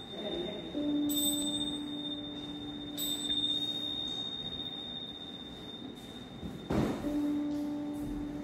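A chime struck twice, about one and three seconds in, its high clear ring carrying on for several seconds over a steady lower tone. A short knock comes near the end.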